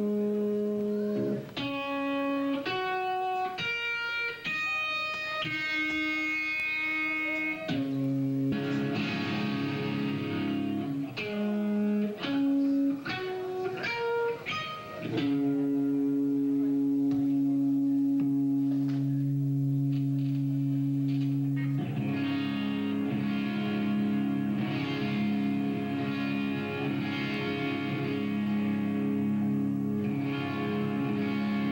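Electric guitar played alone: a series of separate ringing single notes at changing pitches, then from about halfway through a held chord that rings on to the end.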